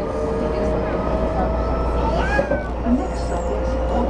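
Meitetsu 2200 series electric train running along the track, heard from behind the driver's cab: a continuous running rumble with a steady motor hum holding a near-constant pitch.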